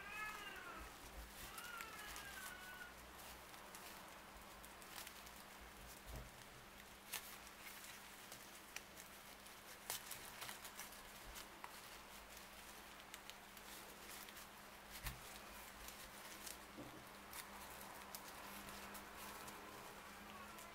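Faint clicks and crackle of stiff paper yarn being worked with a crochet hook, over a low steady hum. A cat meows twice in the first three seconds, two short high calls that rise and fall.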